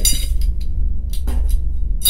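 A light clink right at the start and a short knock about a second later, from objects being handled, over a steady low hum.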